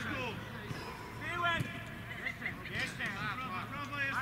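Faint, distant voices of players and onlookers calling out across a football pitch, over a low steady background hum of the outdoors, with no close-up voice.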